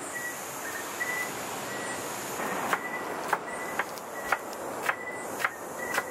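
Knife chopping green onions on a wooden cutting board: a run of sharp taps about two a second begins about halfway in, over a steady hiss.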